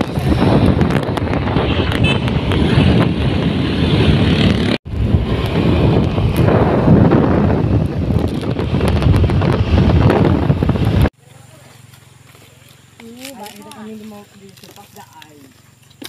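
Heavy wind buffeting on the microphone of a camera riding along on a motor scooter, a dense rumbling noise that drops out for an instant about five seconds in and cuts off abruptly about eleven seconds in. Faint voices follow.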